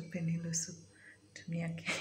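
A woman speaking softly, close to a whisper, in short phrases with sharp hissing consonants about half a second in and near the end.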